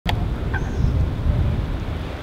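Outdoor ambience: a loud, uneven low rumble with two short high chirps in the first half second.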